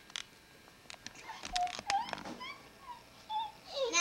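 Scattered sharp clicks and knocks with a few short, high squeaky sounds in the middle, and a voice starting just at the end.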